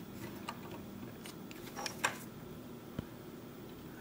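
Faint handling noise from a small circuit board and its plastic housing turned over in the fingers: a few scattered light clicks and short scrapes, a small cluster near the middle and one sharp click about three seconds in.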